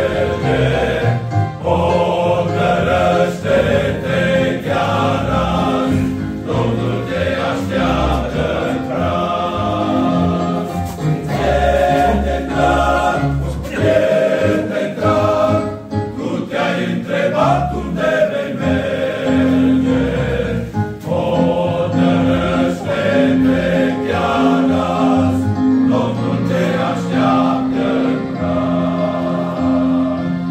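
Men's choir singing a church hymn.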